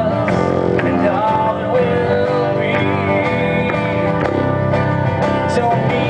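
Acoustic guitar strummed steadily in a country-style song, with a voice singing a melody over it.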